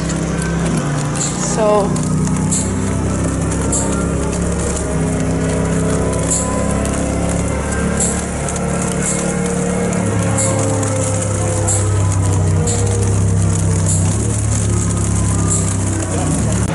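Music with long, held low notes that change every few seconds, with wind rumbling on the microphone.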